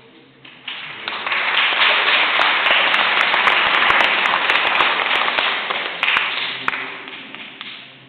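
Audience applauding: dense clapping that swells up over the first second or so, holds, and dies away near the end.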